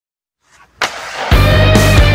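A rock song begins: after a short silence, a brief noisy sound effect comes in just before a second in, then the full band with heavy bass and guitar starts loudly about a second and a half in.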